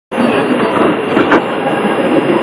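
Shortwave radio receiving a weak AM broadcast on 6180 kHz: loud hiss and static with faint station audio buried in it, cutting in abruptly just after the start.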